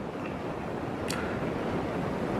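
Steady background room noise, a soft even hiss, with one brief faint breathy sound about a second in.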